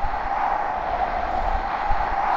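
Steady rushing wind noise with a low rumble underneath, the sound of a tornado's wind.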